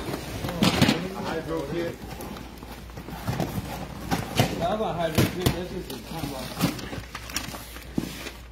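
People talking over cardboard boxes being cut open and handled, with scattered short knocks and scrapes from the cardboard.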